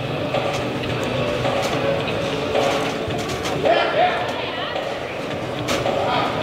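Indistinct murmur of voices in an indoor arena, with a few faint sharp knocks.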